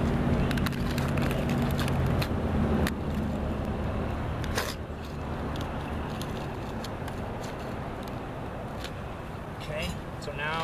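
Hook-blade utility knife cutting through an asphalt shingle, with a few sharp scrapes and clicks. Under it is the low hum of a vehicle engine, which fades after about two seconds.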